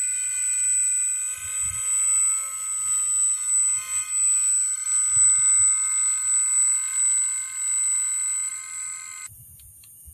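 Electric motor of an RC Cessna Skylane foam model running on the ground: a steady high whine of several stacked tones, some wavering slightly in pitch, that cuts off suddenly near the end.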